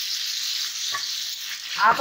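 Potatoes in poppy-seed paste sizzling steadily in a kadhai with a little water just added, a wooden spatula stirring them near the end.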